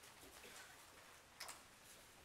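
Near silence: the room tone of a seated audience, with a faint click about one and a half seconds in.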